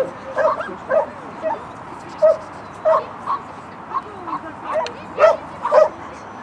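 Shetland sheepdog barking in short, high-pitched yips, about a dozen at uneven intervals, loudest near the end.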